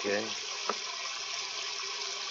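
Steady hiss of rain from a studio storm sound effect, with one short click just under a second in.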